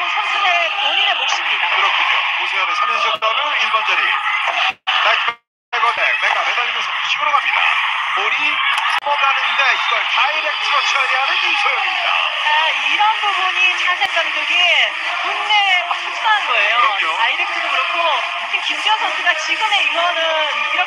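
Arena crowd at a volleyball match heard through a TV sports broadcast: many voices at once, steady throughout, with the sound cutting out for about a second around five seconds in.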